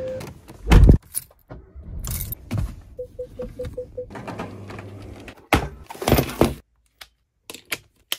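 A heavy thump, then a car's chime beeping six times in quick succession, followed by handling noise and a few clicks.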